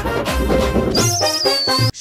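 Short musical sting for a show's title card: a loud, bass-heavy burst of music, joined about a second in by a high warbling whistle that slides slightly downward before it cuts off.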